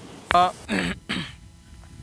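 A person clearing their throat, with two or three short voice sounds in the first second, then a quieter pause.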